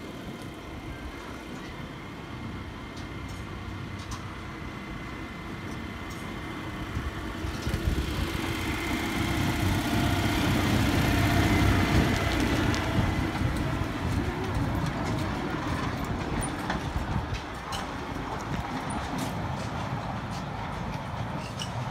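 Small park tourist train, a steam-style locomotive pulling open passenger cars on narrow-gauge track, rolling past. Its running noise builds to a peak about halfway through, then fades as the cars move away.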